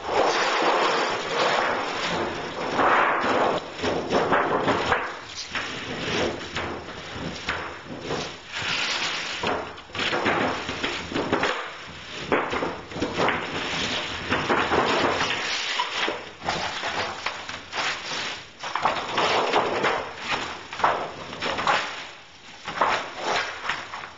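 Thin sheet-metal absorber plate being slid and flexed into place beneath copper tubing on foil-faced insulation board: irregular scraping and wobbling of the sheet, with knocks.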